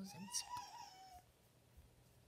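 Faint high whine from a pet animal that slides slightly down over about a second, just after a spoken "and".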